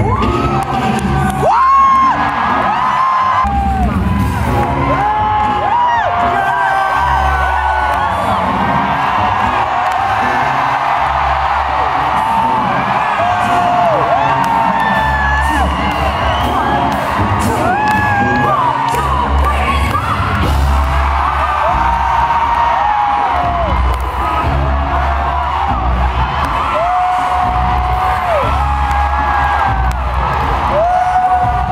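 Live concert music, loud from near the stage: a lead singer's long, gliding melodic lines over a live band with a heavy bass beat.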